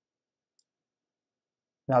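Near silence with a single faint, short click about half a second in, then a man's voice starts right at the end.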